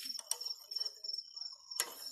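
A steady, high, pulsing chirring of crickets, with low handling noises and two sharp metallic clicks from tools on a single-cylinder diesel engine: one about a third of a second in and a louder one near the end.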